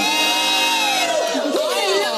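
Women giving a drawn-out, delighted 'ooh' that rises and then falls, over a short held music chord that stops just over a second in. Excited exclamations follow.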